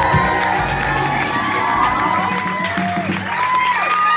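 A live band's final chord rings out and stops about halfway through, while the audience cheers and whoops over it.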